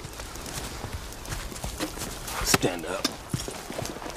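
A horse's hooves clopping and shuffling on the ground in irregular knocks, the sharpest one a little past halfway. A brief voice-like sound follows soon after.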